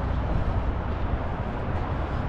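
Steady outdoor background noise: a low rumble under an even hiss.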